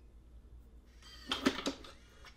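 Lockly Smart Safe unlocking on a remote command from the phone app: about a second in, the latch releases and the steel lid springs open with a quick clatter of knocks and a short metallic ring.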